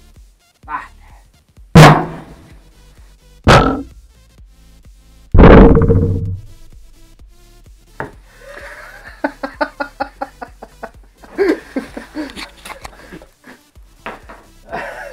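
A 15-inch subwoofer in a sixth-order bandpass box, wired straight to mains power, fires in three short, very loud blasts about two seconds apart, the last the longest at under a second. The blasts overload the microphone. This is the driver being overdriven to destruction, at about two kilowatts. Voices follow in the last few seconds.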